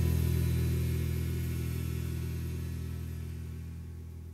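The song's final guitar chord ringing out, its sustained low notes dying away steadily toward silence with no new notes played.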